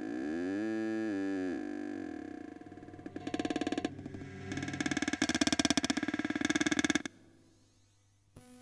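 Experimental electronic ambient music: a pitched synthesized tone glides up and back down, then gives way to a fast, stuttering, pulsing texture that cuts off suddenly about seven seconds in, leaving a faint low hum.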